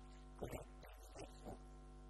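Steady electrical mains hum with a stack of evenly spaced overtones, faint overall, broken by a few short, louder sounds about half a second, a second and a second and a half in.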